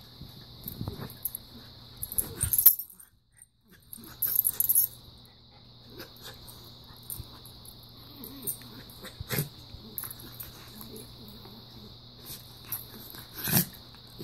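Two dogs play-fighting, mouthing at each other, with snuffling, breathy play noises and scuffling on bedding in irregular short bursts. The sound cuts out for about a second around three seconds in, and the loudest burst comes near the end.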